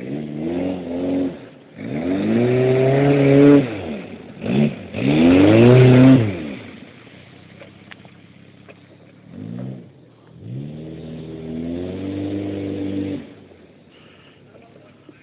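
Chevrolet Chevette's four-cylinder engine revving hard in about six separate bursts, the pitch climbing and then dropping with each. The loudest bursts come in the middle, and the last is longer and steadier.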